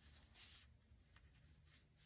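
Near silence, with faint soft brushing of a fine paintbrush across paper as paint is softened.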